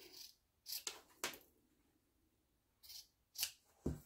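Fabric scissors snipping through fabric squares, several short cuts in two clusters, near the start and again near the end, as small squares are cut out of the corners.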